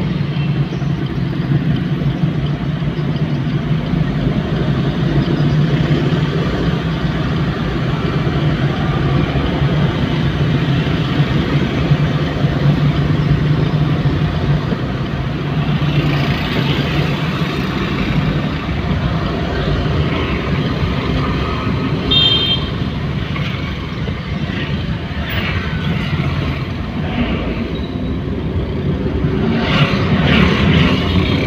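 Steady drone of a car's engine and tyres heard from inside the cabin while driving through city traffic. A brief high-pitched chirp comes about two-thirds of the way through.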